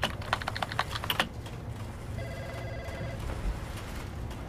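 Computer keyboard typing, a quick run of clicks for about a second, then an office desk phone ringing once with an electronic trill for about a second.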